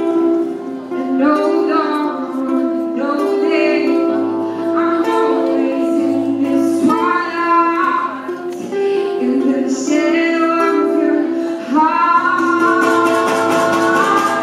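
A woman singing with a strummed and picked acoustic guitar, in short sung phrases over sustained guitar chords; she rises into a long held note near the end.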